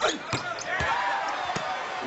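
A basketball dribbled on a hardwood court, a few separate bounces, over the general noise of an arena.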